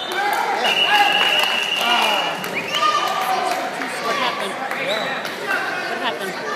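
Referee's whistle blown in one long steady blast of about two seconds, stopping the wrestling match because a wrestler is hurt, over spectators shouting.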